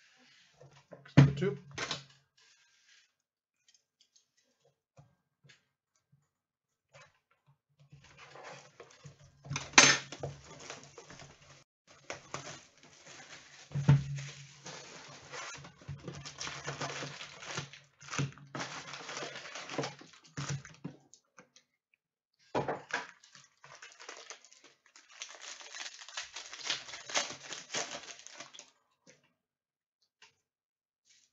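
A box of Donruss soccer trading cards being opened and its foil packs handled. Cardboard knocks a few times, and there are long stretches of crinkling and tearing of foil pack wrappers.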